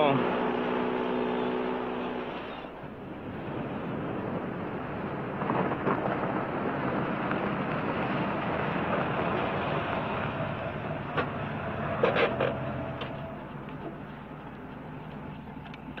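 A held music chord that ends about two and a half seconds in, followed by steady car engine and road noise, with a brief tone near the end.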